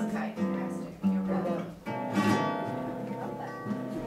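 Solo acoustic guitar playing picked melody notes, with chords struck about a second and two seconds in.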